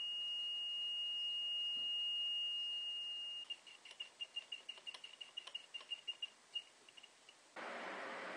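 Small piezo buzzer powered by a homemade five-cell lemon juice battery, giving a steady high-pitched tone that, about three and a half seconds in, breaks into rapid stuttering beeps that thin out and stop.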